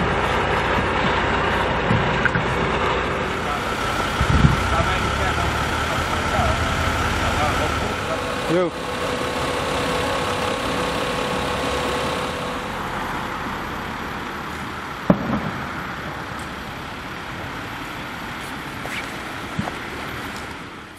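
Steady idling engine noise of emergency vehicles and equipment, with people talking. The sound changes about eight and a half seconds in, a couple of short knocks stand out, and it slowly fades over the second half.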